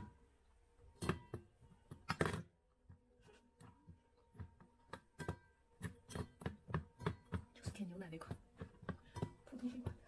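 Samoyed puppy licking and nosing ice blocks in a stainless steel bowl, the ice knocking and clicking against the metal. Two stronger knocks come in the first few seconds, then a quicker run of irregular clicks, a few a second.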